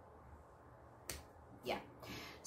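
A single sharp click about a second in, followed by a short spoken "yeah".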